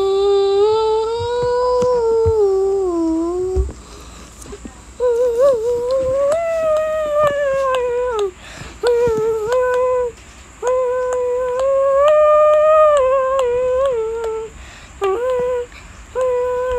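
A person humming a slow, wordless tune in long held notes that slide up and down, broken by a few short pauses between phrases.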